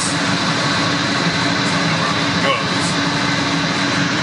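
Steady drone of running machinery, with a low hum and a thin, constant high whine, unchanging throughout.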